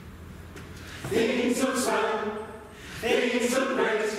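Mixed choir of men's and women's voices singing, coming in about a second in, with a short break between two phrases.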